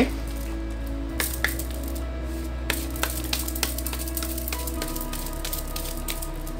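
A tarot deck being shuffled by hand, with many small, crisp card clicks and flicks, over soft background music with sustained tones.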